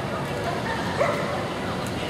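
A dog barks once, a single short bark about a second in, over the steady murmur of a crowd.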